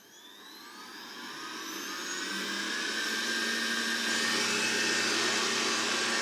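Robot vacuum cleaner resuming cleaning: its motor spins up with a rising whine, growing louder over the first few seconds, then runs steadily.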